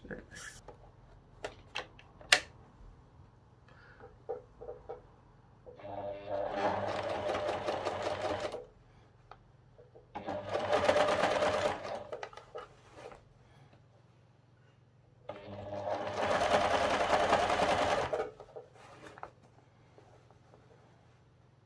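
Pfaff electric sewing machine stitching a Petersham ribbon onto a hat in three short runs of two to three seconds each, the needle going in fast even strokes, with small clicks and taps of the fabric being handled and repositioned between runs.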